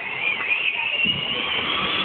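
Power Wheels ride-on toy Jeep driving across concrete: a thin high whine from its electric drive motors and gearbox over a rattly noise from the hard plastic wheels, growing a little louder.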